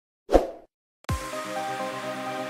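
A short pop-and-swoosh sound effect from a subscribe-button animation, about a third of a second in. About a second in, electronic background music starts with a low thump and runs on steadily.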